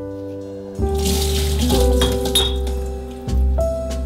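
Water pouring from a bowl of soaked cashews through a metal sieve into a stainless-steel sink, starting about a second in, with a few clinks of the sieve and bowl, over background music with sustained tones.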